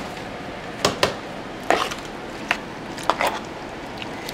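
A spoon and plate knocking against a stainless steel mixing bowl, about six separate clinks spread over a few seconds while chopped onion is added to tomatoes for mixing.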